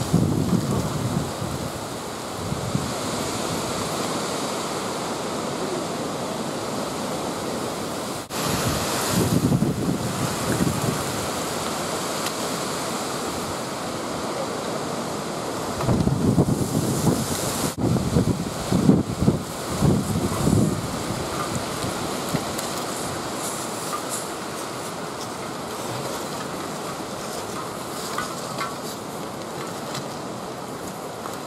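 Wind on the microphone: a steady rushing noise, with heavier gusts buffeting the mic about nine seconds in and again for several seconds from about sixteen seconds.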